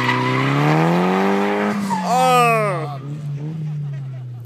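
Nissan S13 drift car sliding through a corner. The engine revs climb and then drop back. About two seconds in, a loud tyre squeal sweeps down in pitch for about a second, then the engine settles to a steady note.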